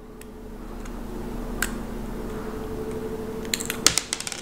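Small metal clicks of a precision screwdriver working at the battery retaining pin of a quartz watch: one click about a second and a half in, then a quick run of clicks near the end as the button-cell battery pops out onto the wooden table. A steady low hum lies under it.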